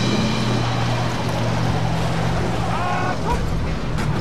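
Heavy armoured vehicle's engine running steadily: a constant low hum under a rushing rumble. There are brief higher wavering tones about three seconds in.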